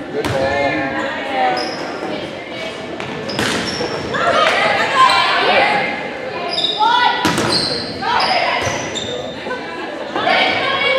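Volleyball rally in a gym: several sharp smacks of the ball being hit, with players and spectators shouting and short high squeaks, all echoing in the large hall.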